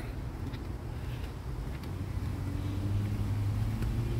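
Low hum of a motor vehicle's engine, growing louder in the second half, with a few faint clicks.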